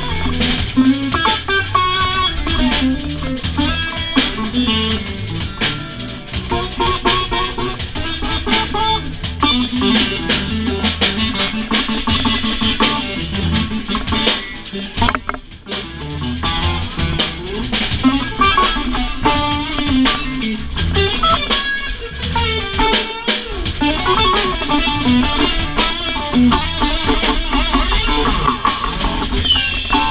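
Live electric blues instrumental: electric guitar, bass guitar and drum kit playing together, with the music briefly dropping out about halfway through.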